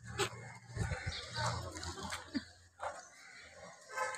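Busy street ambience: scattered voices of passers-by over a low steady hum that stops about two and a half seconds in.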